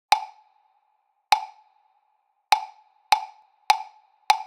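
Count-in clicks with a wood-block-like tone: two slow clicks, then three at twice the pace, counting in the backing track.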